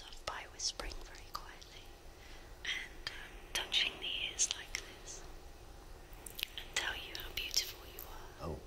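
A woman whispering softly and breathily right up close to a binaural ear-shaped microphone, in short phrases broken by a few small clicks.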